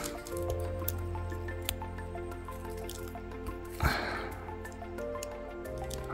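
Background music with long held notes. A few faint clicks and one short rustle about four seconds in, from handling in moss and twigs.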